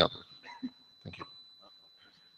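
The last word of a man's speech over a meeting-room PA, then quiet room tone with a faint steady high-pitched tone and a brief faint sound about a second in.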